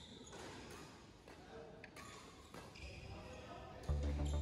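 Badminton rackets striking a shuttlecock in a rally, a handful of sharp hits about a second apart, with footsteps on the court. Loud music cuts in at the very end.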